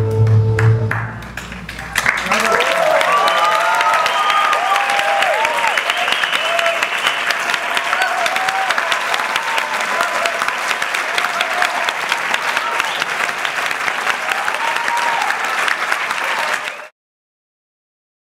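Audience applauding and cheering with whoops after the tango music ends about a second in. The applause cuts off suddenly near the end.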